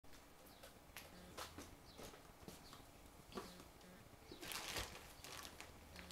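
A quiet room with faint rustles and light knocks as a person moves into place and sits down in a chair, with a louder rustle about four and a half seconds in.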